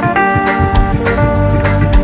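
Live reggae band music: guitar and bass over a steady, evenly spaced drum beat.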